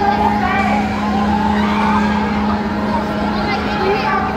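Enterprise-style spinning wheel ride running, its drive giving a steady hum at one pitch, fading slightly near the end, under a mix of crowd voices.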